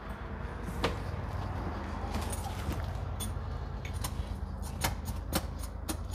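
A steady low engine idle hum, with about a dozen sharp light metallic clicks and rattles scattered over it, more frequent in the second half.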